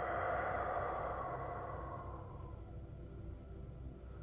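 A long, breathy exhale that fades away over about two seconds, over a steady low background hum.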